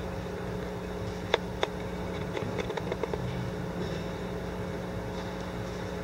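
Steady low hum of room noise in a hall, with two sharp clicks about a second and a half in and a few fainter ticks just after.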